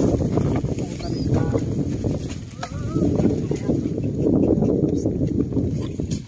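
A carabao pulling a sled loaded with rice sacks through muddy rice stubble: its hooves and the dragging sled make an uneven, continuous scraping noise.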